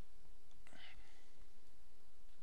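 Steady low microphone hiss and hum, with one short, faint breathy sound from a person a little under a second in.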